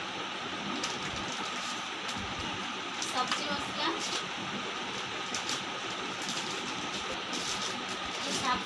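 Plastic shopping bag and packets crinkling and rustling in short scattered spells as groceries are taken out, over a steady background hiss.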